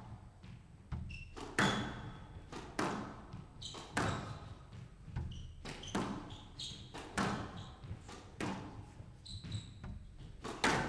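Squash rally: the ball cracks off rackets and the walls of a glass court about once a second, each hit ringing briefly in the hall, with short squeaks of players' shoes on the court floor between strikes.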